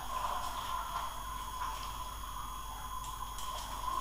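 Steady background hiss with a faint hum, plus a few faint clicks, about three across the few seconds.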